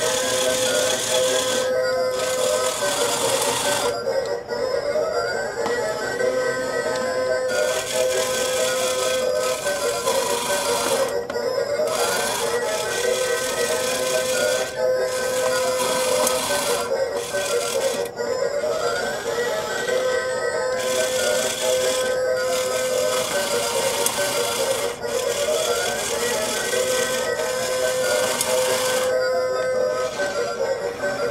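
Toy UFO-catcher crane game playing its electronic tune. It is a short looping melody that repeats about every four seconds, heard while the claw is being operated.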